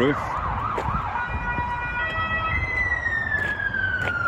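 Emergency-vehicle siren: a quickly warbling tone for about the first second, then a long tone gliding steadily down in pitch through the second half.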